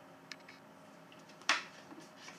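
Handling noise from a small acoustic travel guitar being turned over in the hands: a few faint clicks, then one sharp knock about one and a half seconds in.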